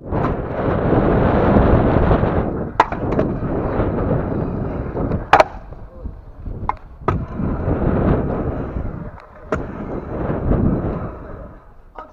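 Stunt scooter rolling fast over a concrete skatepark, its small hard wheels giving a loud rushing rumble mixed with wind on the helmet microphone, broken by several sharp clacks as the wheels and deck strike the concrete; the loudest clack comes about five seconds in.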